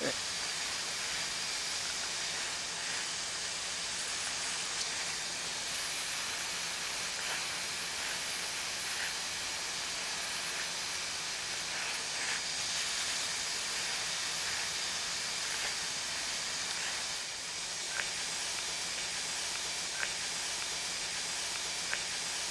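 Steady hiss of a hand-held plastic welder as gray TPO welding rod is melted onto a polypropylene headlight housing to build up a broken mounting tab. A couple of faint ticks come near the end.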